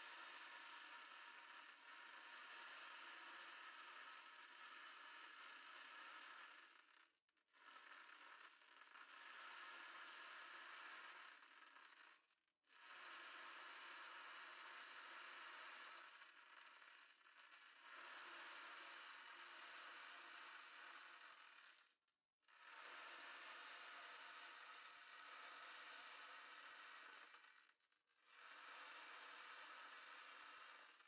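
Ocean drum tilted slowly back and forth, the beads inside rolling across the drumhead in a soft, steady hiss like surf. There are brief pauses about every five to ten seconds as the tilt reverses.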